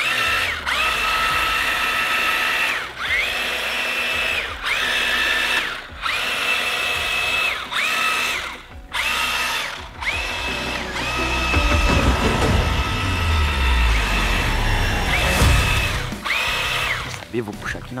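Toy remote-control monster truck's electric motor whining in repeated bursts of one to two seconds, each rising as the throttle opens and dropping as it lets off, while the truck is driven in reverse through the water. A low rumble builds under the whine in the second half.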